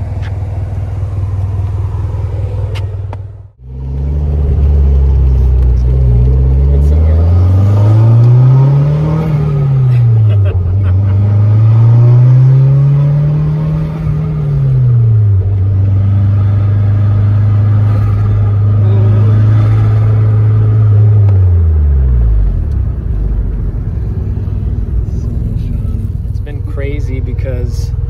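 Turbocharged 3S-GTE inline-four of a Toyota MR2 SW20, running through an aftermarket cat-back exhaust. It idles steadily at first. After a short break it pulls away, heard from inside the cabin: the pitch climbs, drops at a gear change and climbs again, then holds a steady cruise and falls away about 22 seconds in as the car eases off.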